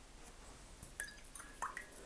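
A watercolor paintbrush being rinsed in a water jar: a few faint little splashes and drips with light clicks, bunched in the second half.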